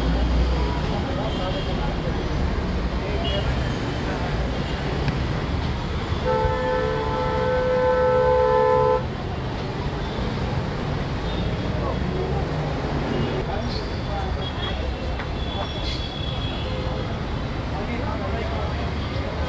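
A vehicle horn sounding one long blast of about three seconds, a third of the way in, over steady road traffic.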